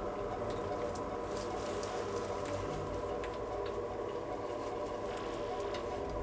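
Steady drone of several held tones that runs unchanged, with faint scattered clicks and rustles over it.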